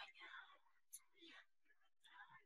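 A woman whispering, very quiet: a few short breathy phrases.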